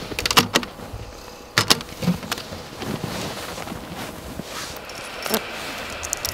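Sharp clicks and knocks from gloved hands working the metal latches of a plastic instrument enclosure and handling its cables. Two come close together near the start, another at about a second and a half, and one near the end, over a steady low rumble.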